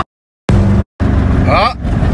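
Car cabin noise while driving: a loud, steady engine and road rumble. It is broken by two short gaps of total silence in the first second, and a brief rising sound comes about one and a half seconds in.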